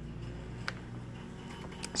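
Quiet electronics-bench room tone: a low steady hum with two faint clicks, about two-thirds of a second in and again near the end, as multimeter probe tips are set on a diode's leads.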